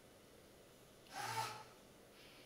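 Quiet room tone, then a little over a second in one short, breathy vocal sound from a man, a quick audible breath with a bit of voice in it.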